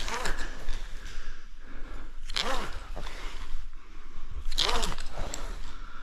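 SRT frog-system rope ascent: two strokes about two seconds apart, each a scraping rush of the rope through the ascenders with a breath of effort.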